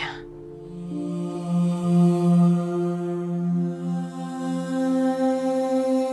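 Background film score: sustained, slowly shifting held chords of an ambient drone, with no beat.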